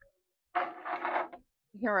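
A woman's voice: a short held, murmured sound about half a second in, then she starts speaking near the end.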